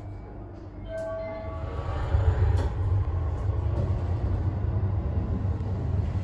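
Low, steady rumble of a subway train running at the station, swelling about two seconds in, with a short tone about a second in.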